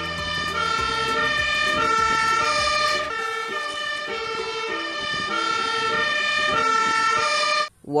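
Fire engine's two-tone siren sounding, alternating steadily between a high and a low note, with low engine noise under it for the first three seconds.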